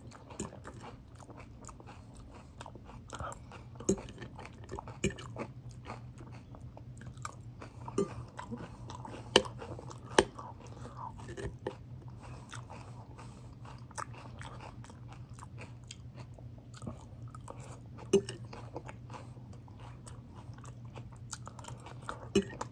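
A person chewing crunchy salad leaves close to the microphone, with a sharp crunch every second or two, the crunches thinning out in the second half.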